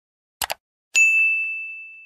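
A quick double click. About a second in, a bright bell ding starts suddenly on a single clear tone and rings on, fading away slowly.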